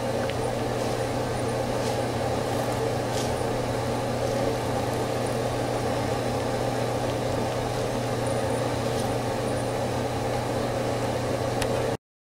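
A steady machine hum with a rushing noise that does not change, and a few faint clicks.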